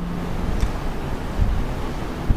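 Steady rushing background noise with a low rumble, like wind on a microphone. A low steady hum stops about half a second in.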